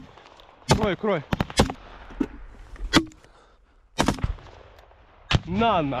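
Small-arms gunfire at close range: sharp single shots spaced roughly a second apart, about five in all, rather than one long burst.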